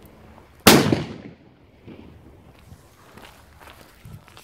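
Pyrostar Bomberos 2.0 firecracker going off once with a single loud, sharp bang under a second in, its echo dying away over about half a second.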